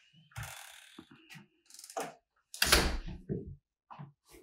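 A front door being worked: the handle and latch click and rattle, then the door shuts with a loud bang a little under three seconds in, followed by a couple of softer knocks.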